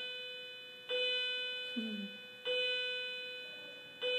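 A bell-like chime struck at a slow, even pace, about once every one and a half seconds, each stroke ringing on and fading.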